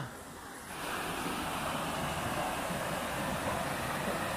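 Mountain stream rushing over rocks in small cascades: a steady rushing of water that grows louder about a second in.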